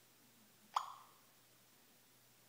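A single short rising "bloop" tone about three-quarters of a second in, from the iPhone's Voice Actions voice-assistant app, signalling that it has stopped listening and is processing the spoken question.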